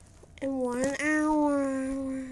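A long, drawn-out meow starting about half a second in. It holds one pitch, with a quick wobble about a second in.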